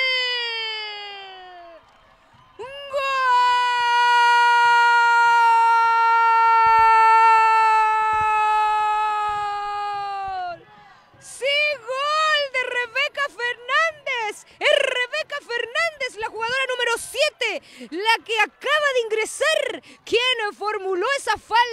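A female football commentator's drawn-out goal cry: a held note that trails off and falls, then a second long cry held on one pitch for about eight seconds, followed by rapid, excited shouting with its pitch swooping up and down.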